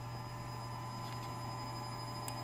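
Steady low hum with a faint, constant high whine from a variable-frequency drive and the belt-driven electric motor of a stainless centrifuge, just started at low speed on a slow ramp-up.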